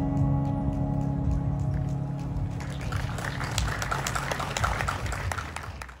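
A digital piano's final chord ringing and dying away, then clapping breaking out about halfway through and fading out at the end.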